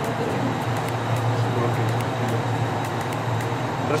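Steady hum and airy rush of a ship's cold-storage room refrigeration unit, its evaporator fans blowing cold air without a break.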